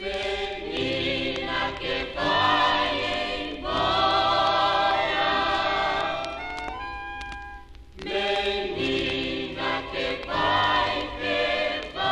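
Vocal group singing a sustained, wordless close harmony with vibrato over orchestral accompaniment. The sound thins to a few held tones about six seconds in, and the full ensemble returns about two seconds later.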